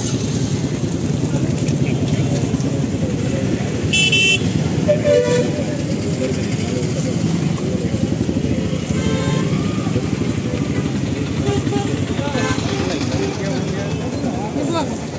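Street traffic with motorcycle engines running, and a vehicle horn tooting briefly about four seconds in and again about a second later, over people talking.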